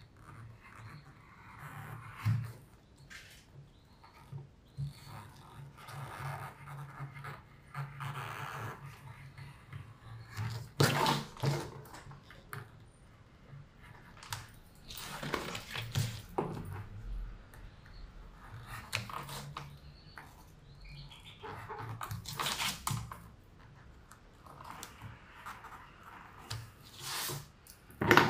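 Craft knife blade drawn through a paper pattern: quiet scratchy cutting strokes in short runs, a few louder ones spread through, over a faint low hum.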